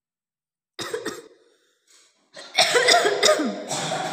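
A person coughing: one cough about a second in, then a longer run of several loud coughs over the last second and a half.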